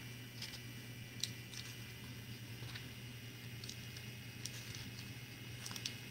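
Faint scattered small clicks and rustles from handling things at a desk, over a steady low hum.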